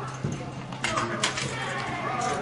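Footfalls on a hard hall floor as an athlete steps over low hurdles: a few sharp taps about a second in, over a steady low hum.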